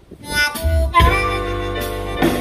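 A live blues band starting a song: a harmonica plays the opening phrase with bent notes, and the band with bass, guitar and drums comes in about a second in.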